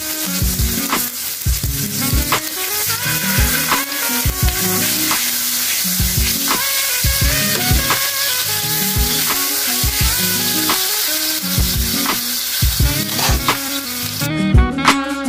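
Pork tenderloin steak sizzling steadily in hot oil in a non-stick frying pan, a continuous high hiss of frying. Background music with a steady beat plays over it.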